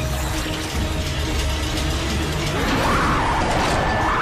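Sound effect of a geared machine spinning, a rapid ratcheting clatter over a low rumble, with a wavering whine that comes in about two and a half seconds in.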